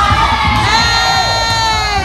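Vogue-beat dance music with a steady low beat. Over it, a high voice calls out and holds one long, slightly falling note for about a second, starting a little under a second in.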